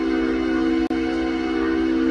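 Electronic music: a sustained synthesizer chord of several steady tones held without change. There is a brief audio dropout about a second in.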